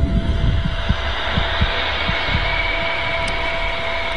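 Sound-design soundscape for the inside of a blood vessel: low, irregular thumping pulses under a steady hiss, with faint held tones.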